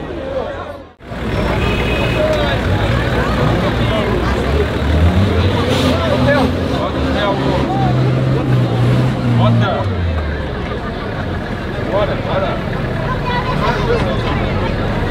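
Off-road 4x4's engine revving under load as it crawls through a sandy trench, its pitch climbing for several seconds, holding, then dropping about two-thirds of the way through, over a crowd of spectators chattering.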